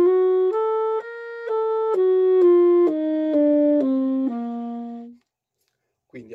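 Tenor saxophone playing the C harmonic major scale (C D E F G A♭ B C) one note about every half second. It climbs to its top note about a second and a half in, then steps back down and ends on a held low note that stops a little after five seconds in.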